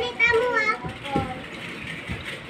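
Children's voices talking and calling out, loudest in the first second.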